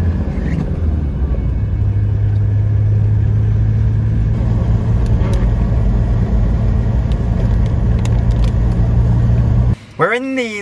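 Land Rover Defender 130 camper driving on a wet road: a loud, steady low drone of engine and road noise that lifts slightly in pitch about a second and a half in, then cuts off suddenly near the end.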